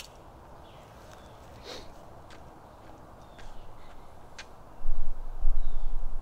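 Quiet outdoor background with a few short, high chirps spread through it, then a loud low rumble on the microphone from about five seconds in.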